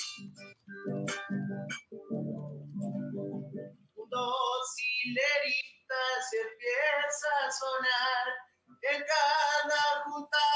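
Acoustic guitar strummed in a chacarera rhythm, with sharp percussive strokes, for about four seconds; then a man's voice comes in singing the chacarera over the guitar, with a brief pause for breath just before the end.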